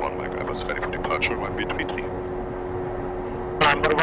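Piper Cheyenne's twin Pratt & Whitney PT6A turboprop engines running steadily, heard inside the cockpit as a constant hum of several fixed tones while the aircraft holds on the runway before the takeoff roll.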